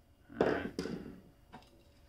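Workbench handling sounds: a dull thunk with a short ring-out about half a second in, a sharper knock just after it and a faint click later. A screwdriver is being laid down on the wooden bench while a hand reaches into the open inverter's steel case.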